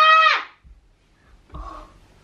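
A child's high-pitched, drawn-out wordless vocal cry that fades about half a second in, followed near the end by a short, quieter vocal sound.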